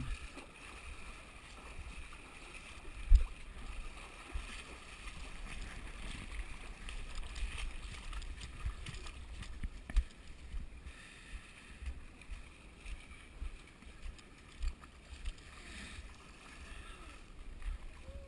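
Feet wading through shallow muddy creek water, splashing and sloshing step after step, with irregular low thumps from the steps and the chest-mounted camera; the loudest thump comes about three seconds in.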